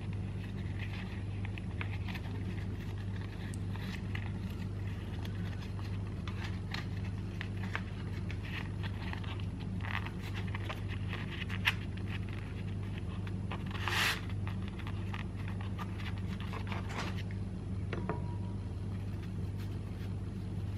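Soft rustling and scraping of a thin yufka pastry sheet being folded and rolled by hand around a potato filling on a wooden cutting board, over a steady low hum. One brief, louder rustle comes about two-thirds of the way through.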